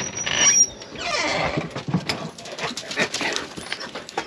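Dogs whining and yelping excitedly as they run, mixed with many short clicks and scuffs.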